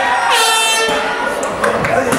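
A short air-horn blast, about half a second long, over crowd voices; at a fight it marks the end of the round.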